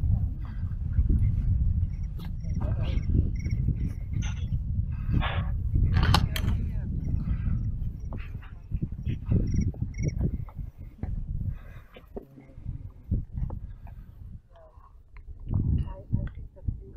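Outdoor field recording of hikers on a gravel trail: wind buffeting the microphone, heaviest in the first half, with irregular footsteps crunching on the path.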